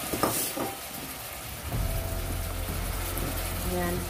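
Marinated pork cubes sizzling as they sauté in a stainless steel pot, with a few knocks from the pot near the start. A low steady hum comes in about halfway through.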